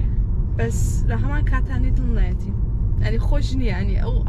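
Speech, mostly a woman talking, over the steady low rumble of road noise inside a moving car's cabin.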